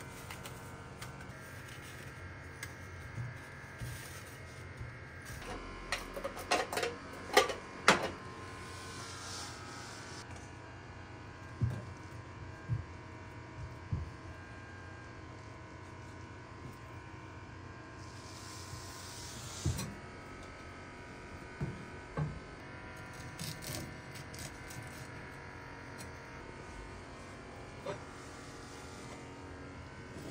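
Fish-preparation handling sounds over a steady hum: a few sharp knocks and clatters of metal trays, fish and a knife on a cutting board, loudest about seven to eight seconds in, with two short hissing rushes of noise.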